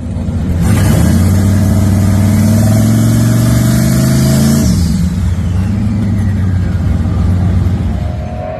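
Turbocharged LS V8 in a Chevy S-10 pickup running loudly, its engine speed climbing slowly for about four seconds and then dropping sharply to a lower, steady speed.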